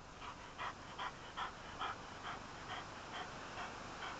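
Dog panting softly and evenly, about two to three breaths a second.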